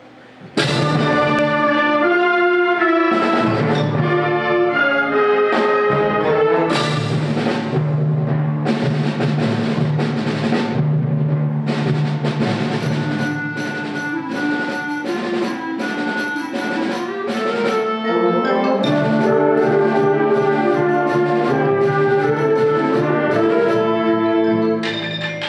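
A full school concert band of woodwinds, brass and percussion playing, coming in suddenly and loudly about half a second in with held chords and moving lines.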